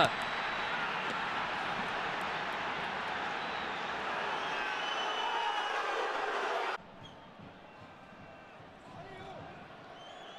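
Football stadium crowd noise just after a goal, loud and steady, cutting off abruptly about seven seconds in to a much quieter crowd murmur.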